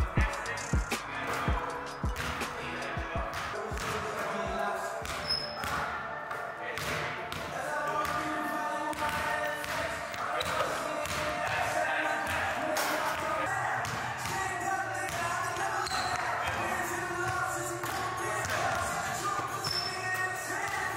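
A basketball is dribbled on a hardwood court: sharp bouncing thumps, about two a second, through the first few seconds. Background music with a vocal carries on throughout and takes over after that.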